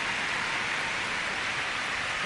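Audience applauding steadily, many hands clapping at once in an even wash of sound.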